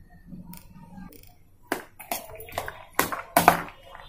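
A hand mixing a salad of boiled chana dal with chopped vegetables and spices in a bowl: soft, wet tossing strokes. They start about a second and a half in and come roughly twice a second.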